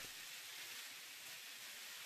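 Faux-filet steaks sizzling faintly in a grill pan, a steady high hiss.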